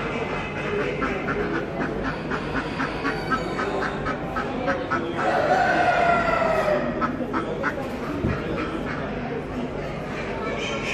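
A white Silkie rooster crowing once, a drawn-out call that falls slightly in pitch, about five seconds in and lasting about a second and a half.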